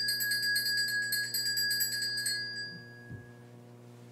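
Altar bell shaken rapidly for the elevation of the chalice at the consecration. It stops a little over two seconds in and rings out.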